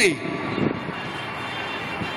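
A steady drone of distant engine noise from outdoor city traffic, with a faint higher whine, filling a pause in speech.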